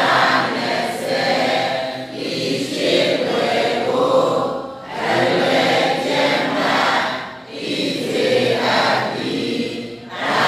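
Buddhist devotional chanting by a group of voices in unison, in phrases of a few seconds each with brief pauses between them.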